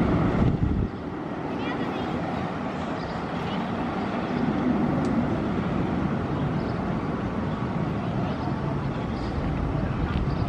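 A Bolliger & Mabillard inverted roller coaster train running through its course, heard off-ride as a steady rumble. The rumble is heavier for the first second, then settles.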